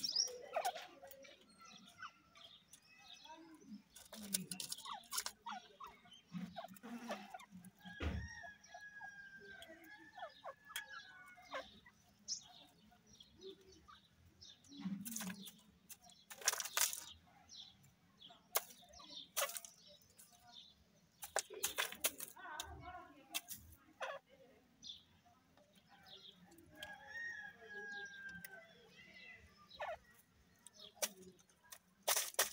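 Grey francolins in a pen giving soft, scattered calls, including a few short drawn-out notes, among sharp clicks and rustles from the birds moving about.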